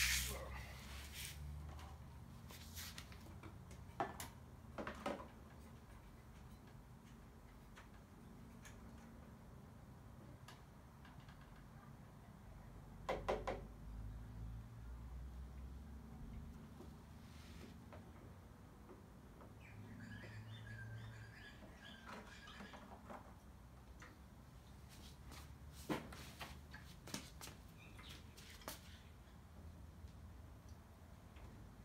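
Quiet handling noise on a small mower engine: scattered clicks and knocks as the oil caps are unscrewed and set down, louder knocks a few times. Briefly, a little past the middle, a bird chirps.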